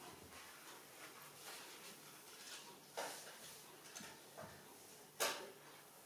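Fingers rubbing and scratching through thick hair against the scalp, a faint scratchy rustle, with two sharper scratches about three seconds in and about five seconds in.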